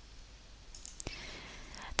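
Two faint, short clicks about a second in, followed by a soft breath just before speech begins.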